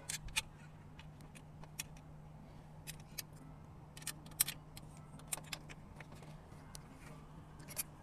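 Scattered small metallic clicks and taps as an Allen key and the metal sections of an awning anti-flap arm are handled and fitted together, over a faint steady low hum.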